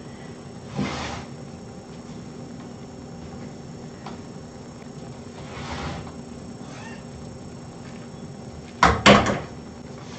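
Two sharp knocks close together about nine seconds in, the loudest sound, over quiet room noise with a couple of short, softer sounds earlier.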